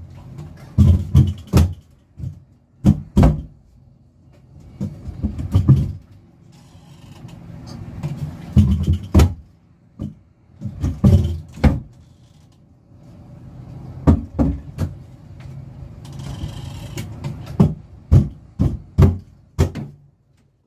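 Irregular sharp knocks and clacks of wooden cabinet doors and hand tools striking the wood while door hardware is fitted, with a couple of quieter stretches of scraping in between.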